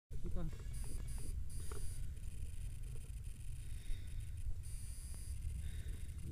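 Wind rumbling steadily on the camera's microphone, with a few faint voices in the first two seconds.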